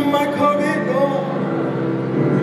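Live music from a stage keyboard playing sustained chords, with a man's voice singing over it in the first half.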